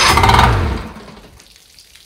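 Outboard motor cranking over on its starter in a short burst under a second long, the cranking winding down in pitch and fading out without the engine running on.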